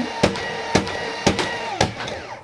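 Motorised Nerf Speedswarm blaster running with a steady motor hum and firing darts in an even run of sharp shots, about two a second. It was started with one push of its remote button and keeps firing until the button is pushed again.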